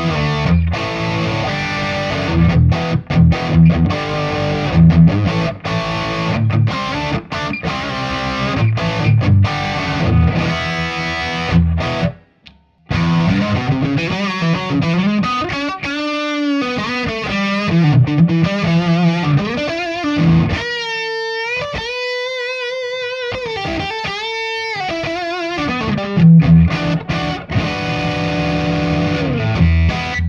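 Overdriven electric guitar, a PRS SE fitted with new Vaughn Skow humbucking pickups. It plays chugging, choppy riffs with abrupt stops, breaks off briefly about twelve seconds in, then holds bent notes with vibrato before more riffing near the end.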